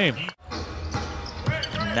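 A basketball being dribbled on a hardwood court, a few faint knocks over a steady low arena hum. A brief dropout to silence comes just after the start, and a commentator's voice comes in about a second and a half in.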